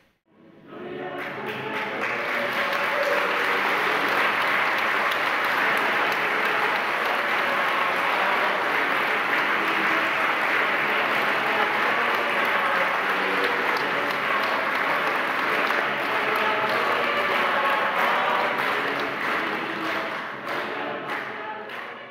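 A crowd of guests applauding, swelling in about a second in, holding steady, and fading out near the end.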